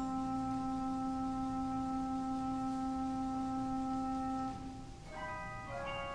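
Wurlitzer theatre organ holding a steady chord with a strong low note for about four and a half seconds, then letting it die away. About five seconds in, a new passage of short, quick notes begins.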